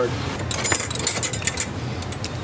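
Small metal hex keys clinking and jangling together in a hand for about a second, midway through.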